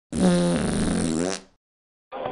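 A fart sound effect about a second and a half long, one pitched tone that wavers near the end.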